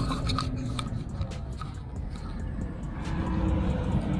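Steady low drone of a moving pickup's cab: road noise and the Ford F-250's 6.7 L Power Stroke diesel. A few short clicks and rubbing sounds come in the first second.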